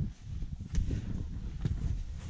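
Mountaineering boots stepping on bare rock, two sharp knocks about a second apart, over a low wind rumble on the microphone.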